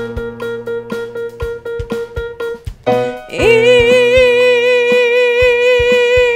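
Electric keyboard holding a chord over a steady beat of about two clicks a second; about three seconds in, the chord changes and a woman's voice slides up into a long held 'ee' vowel sung with an even, regular vibrato, a vibrato exercise.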